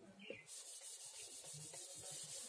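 Whiteboard duster rubbed quickly back and forth across a whiteboard, a faint scrubbing wipe in rapid even strokes that starts about half a second in.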